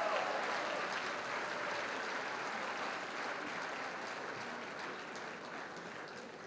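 Audience applauding, a dense patter of many hands clapping that slowly fades away.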